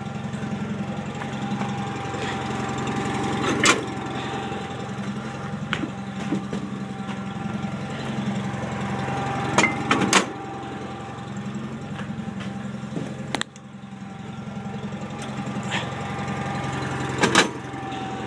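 John Deere 318 garden tractor's Onan two-cylinder engine idling steadily after a cold start. Several sharp metal clanks break in, about four, ten, thirteen and seventeen seconds in, as cast suitcase weights are set onto the tractor.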